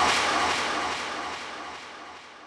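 Synthesized noise sweep closing a psytrance track: a wide rushing hiss, jet-like, fading steadily away with its treble dropping off.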